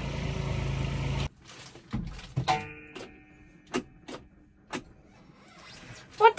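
A steady low mechanical hum stops abruptly about a second in. Quiet follows, broken by several sharp clicks and knocks.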